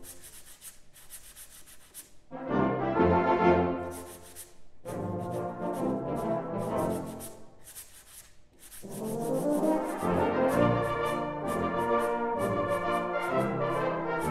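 Brass band playing with sandpaper blocks rubbed together in a steady rhythm of short scratchy strokes. For about the first two seconds the sandpaper is heard almost alone, then brass chords come in, fall back and swell again in the second half.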